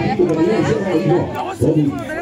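Several people chatting, their voices overlapping, with no clear words.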